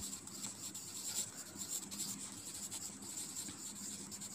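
Pencil writing on notebook paper: a faint, irregular scratching of short strokes as words are written out.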